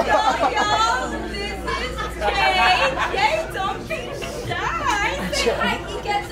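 Indistinct voices talking over one another, with a steady low hum underneath.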